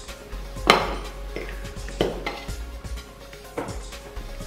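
Metal forks clinking and scraping on a ceramic plate while mango slices are speared: a few sharp clinks, the loudest about a second in. Soft background music runs underneath.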